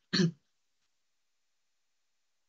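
A man briefly clears his throat, one short voiced sound of about a quarter second just after the start.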